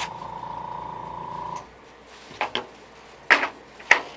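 Airbrush air supply giving a steady, buzzing whine for about a second and a half, then cutting off, just after the air pressure is turned up. A few sharp clicks follow as the airbrush is handled.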